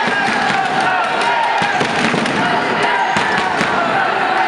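Basketball-hall crowd noise during play: many voices shouting and cheering over a steady run of sharp claps and bangs.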